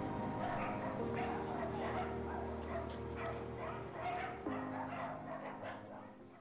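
Dogs barking and yipping in short repeated calls, about two a second, over soft background music of held chords; the sound fades down toward the end.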